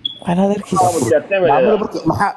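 Speech: a person talking over a live video call, with a brief hiss near the middle.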